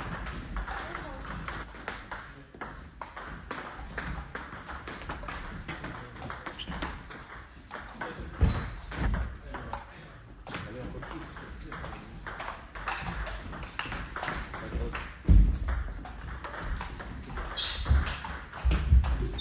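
Table tennis rallies: the ball clicking quickly back and forth off bats and table, with a few heavy low thuds in the second half.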